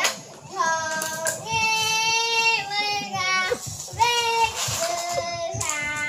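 A young child singing in a high voice, several phrases with notes held for about a second each and short breaks between them.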